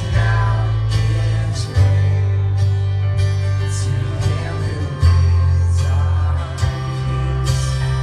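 Live worship song played through a PA: guitar over a heavy, sustained bass line, with a singing voice.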